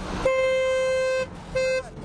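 A vehicle horn honking twice in stopped motorway traffic: a steady blast of about a second, then a short one.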